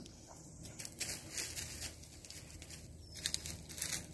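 Irregular rustling and crackling of dry leaves and twigs in undergrowth, with the loudest run of crackles near the end.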